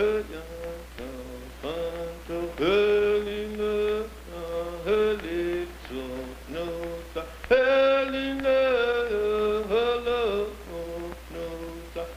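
Film soundtrack of chanted singing: sustained notes that scoop and slide from one pitch to the next, growing louder about seven and a half seconds in, over a steady low hum.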